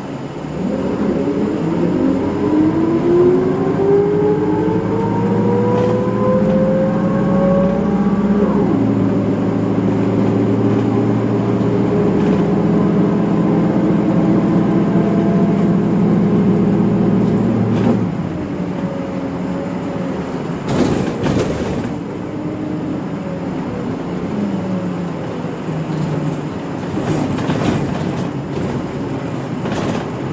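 Isuzu Erga Mio city bus's diesel engine heard from inside the bus as it pulls away. Its pitch rises for about eight seconds, drops suddenly at an upshift, then holds steady under load until the driver eases off about 18 seconds in. A brief clatter sounds about 21 seconds in.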